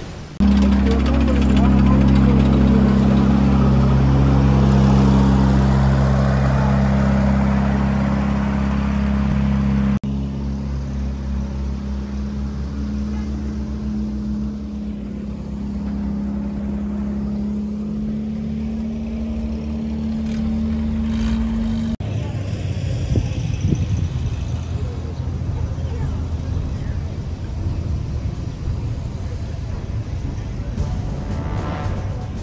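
WWII half-track's engine idling steadily, with people's voices around it. The engine sound stops about 22 seconds in.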